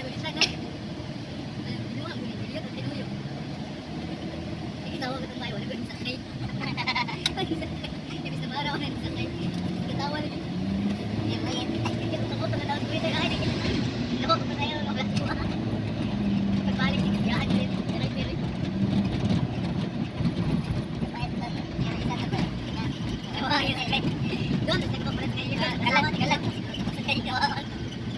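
Van engine and road noise heard from inside the moving cabin, a steady hum whose pitch shifts up and down as the van changes speed.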